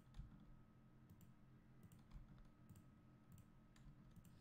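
Near silence with a few faint, irregular clicks of a computer mouse and keyboard over a faint steady hum.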